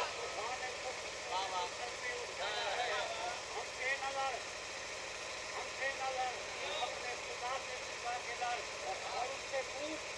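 Faint, scattered voices of people murmuring in short snatches, much quieter than the recitation around it, over a steady low hum.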